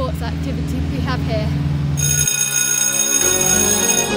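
A boy's voice over background music, then about halfway in an electric school bell starts ringing, a steady bright metallic ring lasting about two seconds.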